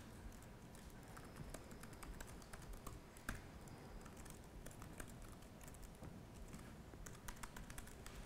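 Faint, irregular keystrokes on a computer keyboard as a line of code is typed.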